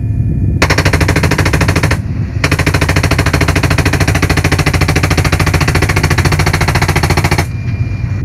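A door-mounted PKM 7.62 mm machine gun firing from inside a Mi-171Š helicopter. It fires a short burst of about a second and a half, then, after a brief pause, a long burst of about five seconds. The steady low drone of the helicopter runs underneath.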